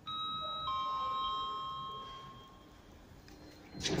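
Kone lift landing chime sounding a falling two-note ding-dong, with each note ringing out over about two seconds. It signals the lift's arrival at the floor.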